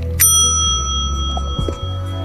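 A single bright bell ding, struck once just after the start and ringing for about a second and a half: the notification-bell sound effect of an animated subscribe button. Soft background music runs underneath.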